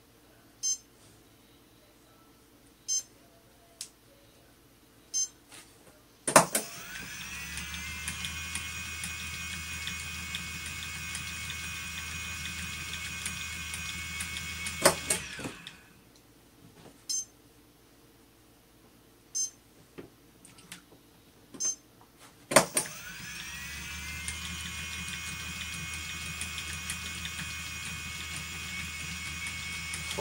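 Phoenix electric motor spinner driving its flyer while flax is spun. After a sharp click about six seconds in, its motor whine rises quickly to a steady pitch with a low hum under it, runs about nine seconds, then winds down and stops. A few sharp clicks sound in the pause before it starts again the same way and runs on.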